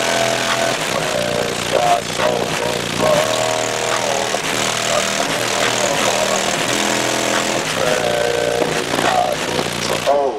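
A car audio system plays a bass-heavy song loud through three 21-inch subwoofers. The low bass line steps between notes about once or twice a second. The music cuts off right at the end.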